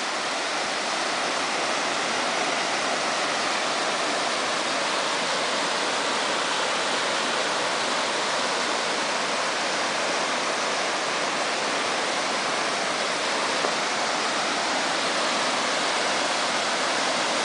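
Stream water spilling over a small stone weir and rushing through the rocks below it, a steady, unbroken rush.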